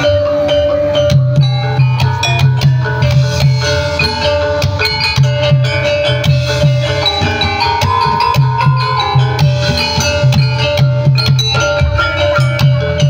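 Loud Javanese gamelan-style jaranan music played through loudspeakers: a pulsing drum beat under ringing metallophone notes and a long held high note that breaks off and comes back.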